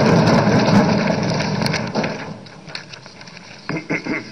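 Applause from a chamber full of seated legislators, a dense patter of many claps and thumps that dies away over about the first two seconds into quiet room noise.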